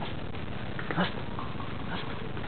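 A Catahoula-type dog gives one short, sharp bark about a second in, over a steady background hiss.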